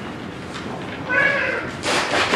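Whiteboard marker squeaking on the board while words are written: one short, high-pitched squeal about a second in, followed by a brief scratchy stroke near the end.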